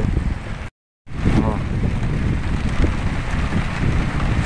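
Heavy rain and wind, with wind rumbling on the microphone; the sound drops out for a moment about a second in, then resumes.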